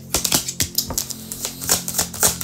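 A deck of tarot cards being shuffled by hand: a quick, irregular run of card clicks and flicks. Soft background music plays underneath.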